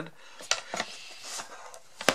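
Plastic housing of an electric pencil sharpener being handled and tilted apart: a sharp click about half a second in, a few lighter ticks and soft rubbing of plastic against plastic.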